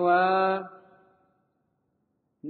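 A man's voice chanting a line of Pali sutta text, holding its last syllable on one steady note for about half a second before it fades away.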